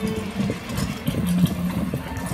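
Hoofbeats of a four-horse team and the rumble of a carriage's wheels over dry, dusty ground as the team passes at speed.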